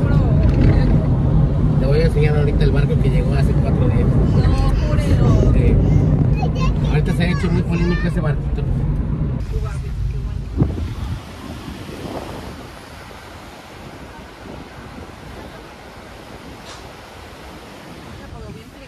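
Road and wind noise inside a moving car with its windows open, over a steady low engine rumble. About eleven seconds in it drops to a much quieter, even hiss.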